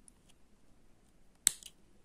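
Small spring-action thread snips cutting embroidery thread: one sharp snip about one and a half seconds in, with a fainter click right after and a few light ticks before it.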